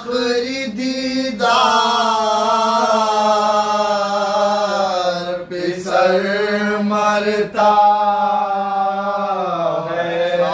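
Soz khwani, an Urdu mourning elegy sung without instruments: a male lead voice singing long, drawn-out melodic phrases, with the humnawa backing voices holding a steady low note beneath.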